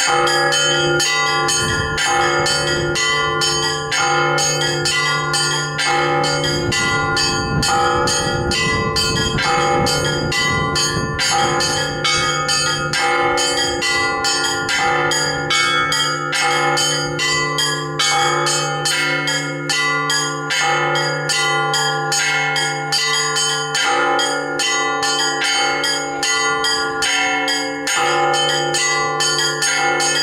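Russian Orthodox church bells rung by hand from ropes in a continuous festive peal (trezvon): rapid strikes on a set of small bells, several a second, over a steady low hum.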